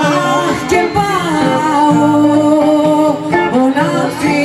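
Traditional Greek folk song: a singing voice with string accompaniment, the melody holding long notes and sliding between them over a steady plucked-string backing.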